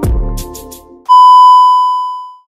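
Intro music for about the first second, cut off by a loud, steady, high TV test-card beep, the tone played over colour bars, which starts to fade near the end.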